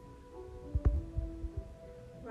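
Soft background music with long held notes, with a few low thumps and one sharp knock a little under a second in.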